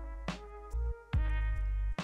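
Electronic synthesizer tones stepping between a few held pitches over a steady low bass, with a click at some of the changes; it gets louder just after a second in.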